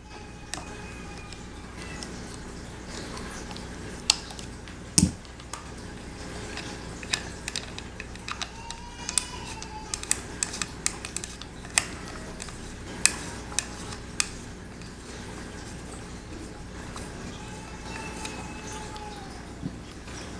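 A screwdriver backing out the takedown screw of a Ruger 10/22 rifle, with scattered small metal clicks and ticks as the screw and tool are handled, a few of them sharper.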